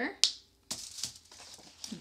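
A sharp click about a quarter second in as a felt-tip marker's cap is snapped on, followed by quieter rustling and scraping as the marker is set down and a paper plate is picked up.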